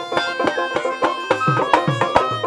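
Bengali Baul folk ensemble playing: a harmonium and bamboo flute hold the tune over a plucked dotara, while a two-headed dhol drum strikes a steady beat with low, falling bass strokes and small hand cymbals ring.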